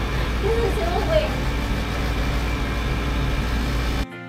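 Steady low rumble and hiss inside a turning Ferris wheel gondola, with a short spoken word early on.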